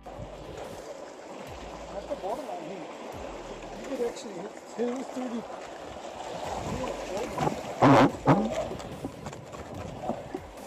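Wind and water lapping against jetty rocks, with faint indistinct voices, and one loud burst about eight seconds in.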